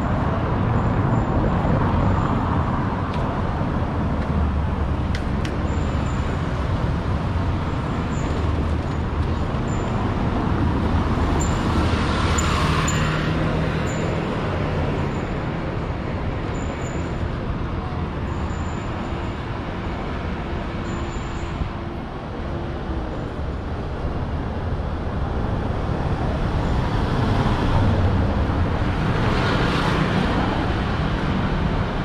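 Steady city street traffic: motor vehicles running past, with one vehicle going by louder about twelve seconds in and another near the end.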